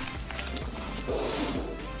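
Plastic mailer packaging rustling and crinkling as a small cardboard box is pulled out of it, strongest in the second half, over quiet background music.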